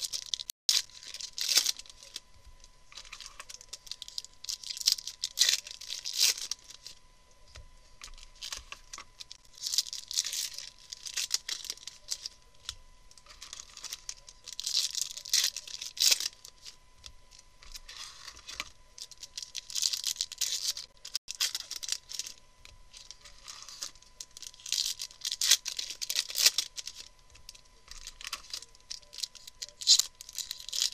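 Foil-lined baseball card pack wrappers being torn open and crinkled by hand, one pack after another, in loud bursts every few seconds.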